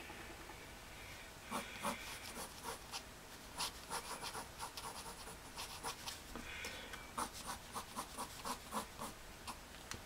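Pencil scratching on paper in a run of short drawing strokes, irregular at first and coming about three a second near the end.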